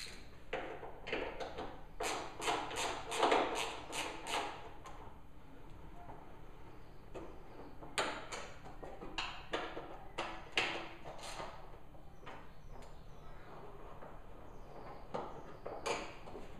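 Hand tools clicking and tapping against a dirt bike's frame as the rear subframe bolts are undone: irregular sharp metallic clicks in two busy spells, the first a few seconds in and the second around the middle, with quieter handling between.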